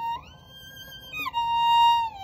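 Solo violin playing long bowed notes: a held note slides up to a higher one that is held softly, then slides back down just over a second in and swells louder toward the end.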